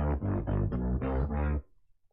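Heavily distorted electric bass line, isolated from the original recording by stem separation: a run of short, evenly repeated notes that stops about a second and a half in. The tone is very gritty, a sign of the distortion on the original bass.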